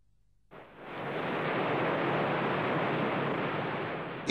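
Steady rushing noise of an erupting volcano's lava fountain. It starts suddenly about half a second in, after near silence, and holds evenly.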